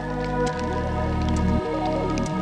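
Instrumental electronic music: sustained bass notes that change about every second, under steady chords and faint ticking percussion.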